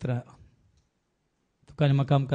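Speech only: a man praying aloud in Konkani into a microphone, breaking off after the first half second and going on again after about a second of silence.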